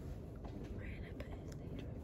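A quiet pause in a woman's talk: a low steady background rumble, with a soft breath or whispered sound about a second in and a few faint clicks.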